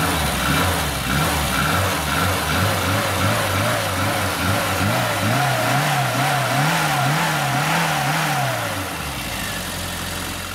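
Car engine running just after starting, revved in quick repeated blips so its pitch rises and falls almost twice a second, then dropping back near the end.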